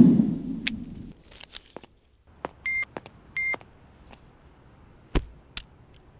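Two short, high electronic beeps from a mobile phone, about half a second apart. Before them, a deep boom fades out in the first second, and two faint clicks come near the end.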